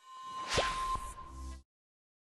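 Whoosh sound effect for a logo intro animation, loudest about half a second in with a quick falling tone, followed by a click and a brief low hum.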